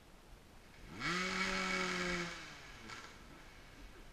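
A dirt bike engine revved up sharply about a second in, held at steady revs for just over a second, then let back down.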